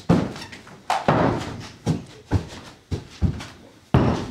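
Heavy bare-foot thuds and stamps on a carpeted floor, about seven in four seconds, from the run-up, take-off and landing of an acrobatic tricking move; a hard thud near the end as he lands.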